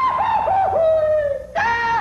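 Goofy's cartoon holler: a long high cry that wavers and slides down in pitch, breaks off about one and a half seconds in, and starts again.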